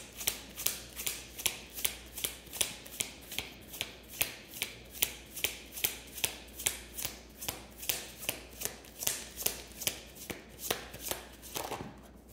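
A tarot deck being shuffled by hand: a steady run of crisp card slaps, two or three a second, stopping just before the end.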